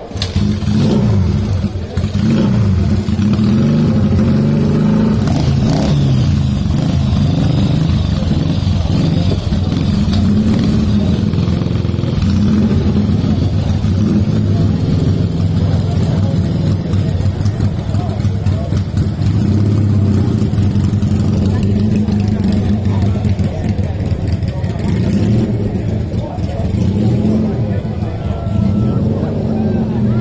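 Small Honda motorcycle engine running close by, idling steadily with small changes in revs. It comes in loud about half a second in.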